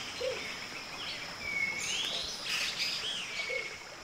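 Wild birds calling: clear whistled notes that arch up and then down in pitch, and two faint low hoots, one early and one near the end, over a steady high insect drone.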